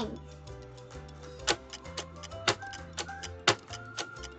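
Light background music with a clock-ticking sound effect for a countdown timer: a sharp tick about once a second, with fainter ticks between.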